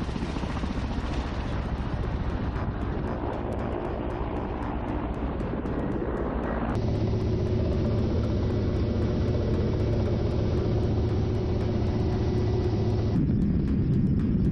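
Kamov Ka-52 Alligator attack helicopter in flight: a steady drone from its coaxial rotors and turbine engines. The character of the sound changes abruptly about 3, 7 and 13 seconds in as spliced shots change, with a steadier low hum in the middle stretch.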